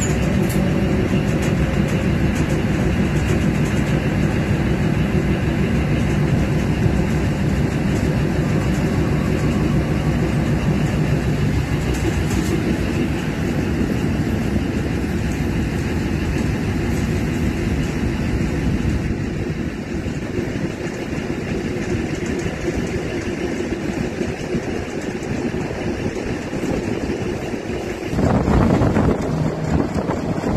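Train locomotive running along the line, a steady drone of engine and rail noise. Near the end it gives way abruptly to louder wind buffeting on the microphone.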